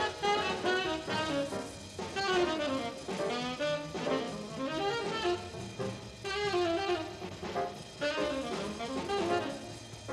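Tenor saxophone soloing in quick, flowing jazz runs, backed by piano, double bass and drums of a jazz quintet.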